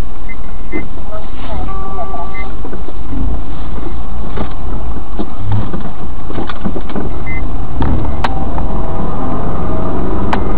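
Loud, steady vehicle and road noise with scattered sharp clicks and knocks and a few brief steady tones.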